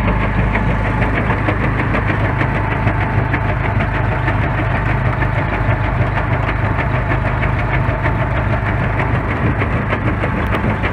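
A gold prospecting dryblower running: a steady engine-driven drone with a rapid, regular knocking rattle from the shaker linkage working the classifier tray.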